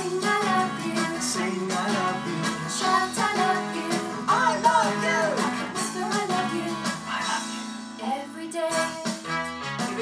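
A Christian children's action song playing, with voices singing over instrumental backing and a steady beat.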